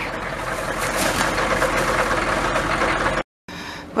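Pickup truck engine running steadily with a low hum, cutting off suddenly about three seconds in.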